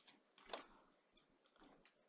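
Near silence with light handling of a tarot card: a soft brush about half a second in, then a few faint clicks as the card is picked up.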